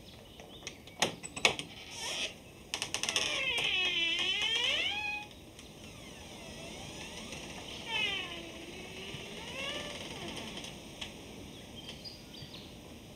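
Latch or lock of a wooden door clicking sharply twice, then rattling quickly, followed by the hinges creaking as the door is opened: a long squeal that dips in pitch and rises again, then fainter creaks as it swings.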